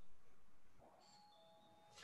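Near silence, with a faint electronic chime in the second half: two steady notes, the second a step lower than the first.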